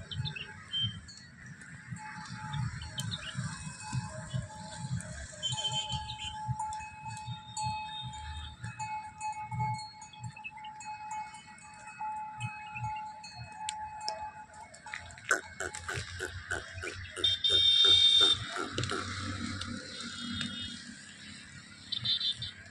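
A herd of Banni water buffaloes moving past on a dusty track, with low thumps all through and faint, steady ringing tones over them. A louder run of quick pulses comes about two thirds of the way in.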